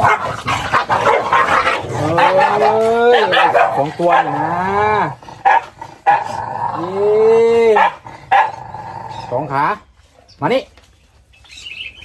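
Excited dogs whining and howling in long calls that rise and fall in pitch, two drawn-out calls a few seconds apart among shorter yelps. They are begging for food being handed out.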